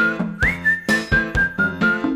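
Children's TV theme jingle: a whistled melody that swoops up and then steps down through a few held notes, over a steady beat of about four hits a second.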